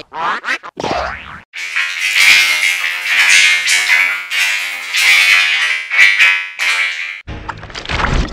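Heavily effects-processed logo-jingle audio, distorted and pitch-warped. It opens with a few short sweeping sounds, then turns into a dense, shrill, buzzing stretch full of sharp hits, and switches abruptly to a lower, choppier sound near the end.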